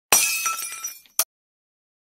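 Glass-shattering sound effect: a sudden crash with tinkling, ringing pieces that die away over about a second, then one short sharp burst.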